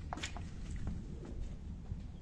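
Handling noise from a moving handheld phone: a low rumble with a few light clicks in the first half-second.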